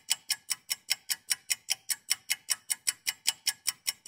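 Fast, even ticking of a clock-style countdown sound effect, about five sharp ticks a second, timing the few seconds given to guess.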